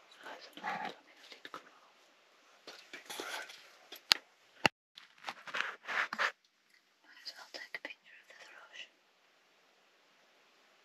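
Hushed whispering voices in short bursts, with two sharp clicks about four seconds in.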